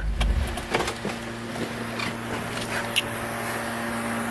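The 1964 Ford Thunderbird's 390 V8 is switched off about half a second in and its low rumble stops. A steady low hum remains, and a few clicks and knocks follow as the car door is opened.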